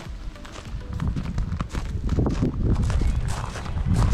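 Footsteps crunching on loose gravel, growing louder about a second in, with faint music beneath.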